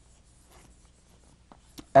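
Chalk writing on a blackboard: faint scratching strokes, with a couple of short taps near the end.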